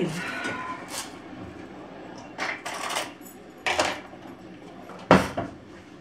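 Kitchen handling sounds: plates, a knife and food being set down and moved on a countertop, a handful of knocks and clatters with the loudest about five seconds in.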